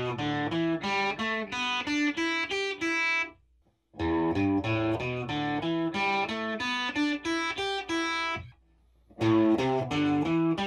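Electric guitar, a Les Paul Standard with a P.A.F.-style humbucker, played through a distorted amp. The same picked riff is heard in three takes cut together with short gaps: the first with nickel-plated steel bobbin mounting screws, the second, about four seconds in, with brass screws, and the third, near the end, with steel again.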